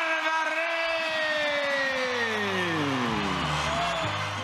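A boxing ring announcer's voice holding one long, drawn-out call of the winner's name, the note sliding steadily down in pitch for about three and a half seconds, over arena crowd noise.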